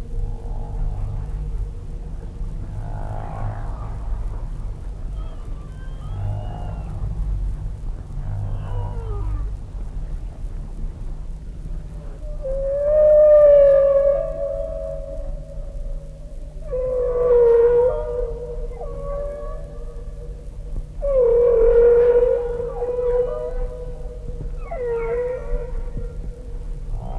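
Recorded humpback whale song played back: a series of long, pitched cries that rise and then hold. The three loudest come about halfway through and later. Under them run a steady low hum and a held tone.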